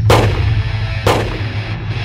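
Two handgun shots about a second apart, each with a fading ring, over loud distorted heavy metal music.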